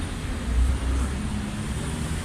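Street traffic noise: a steady low rumble with a faint engine hum.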